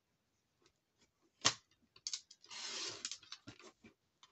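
Paper trimmer cutting card: a sharp click, then a rasping slide of under a second as the blade runs through the card, with lighter clicks of the card and trimmer being handled around it.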